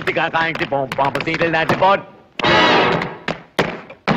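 Big-band swing music from an old film soundtrack with tap dancers' shoes clicking and thudding sharply over it, and a dense noisy burst a little past halfway.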